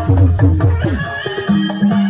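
Traditional Javanese bantengan music with a regular low drum beat and pitch-bending strokes; a held low tone comes in about one and a half seconds in.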